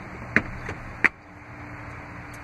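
A Chrysler Pacifica's folded second-row Stow 'n Go seat dropping into its floor well and the floor cover being shut over it: three sharp knocks, the loudest about a second in.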